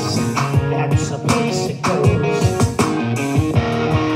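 A band playing rock in an instrumental stretch: electric guitar and bass guitar over a steady drumbeat, with no singing.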